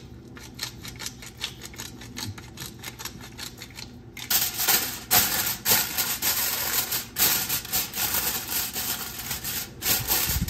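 A hand-turned pepper mill grinding peppercorns: a quick run of dry clicks. About four seconds in, loud crinkling and crackling of aluminium foil being stretched over a glass baking dish and pressed down around its rim.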